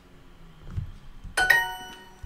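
A language-learning app's correct-answer chime: a short, bright bell-like ding about one and a half seconds in that rings on briefly and fades, signalling that the answer was right.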